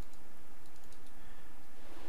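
A few faint, light clicks at a computer over a steady background hiss.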